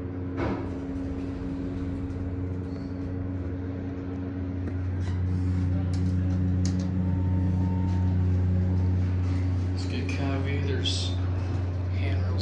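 Steady low hum inside a Murphy traction elevator cab, swelling for a few seconds in the middle, with a few light clicks as floor buttons are pressed.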